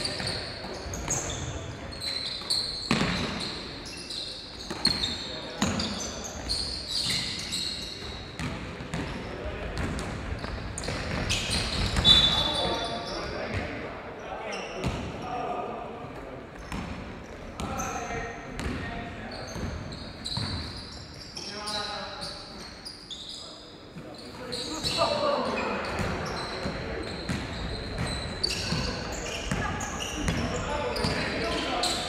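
Basketball game play on a gym court: the ball bouncing and players' footsteps knocking on the floor, short high sneaker squeaks, and players' shouts, all echoing in the large hall. A sharper bang about twelve seconds in is the loudest sound.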